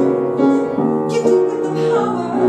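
Piano accompaniment for a musical theatre ballad, playing sustained chords that change about every half second to a second.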